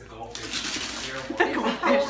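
Wrapping paper being torn and crinkled off a gift box: a rustling, tearing noise that starts about a third of a second in, with voices over it in the second half.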